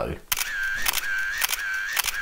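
A run of about five electronic beeps, each a steady high tone opening and closing with a click, about two and a half a second, from an edited-in sound effect.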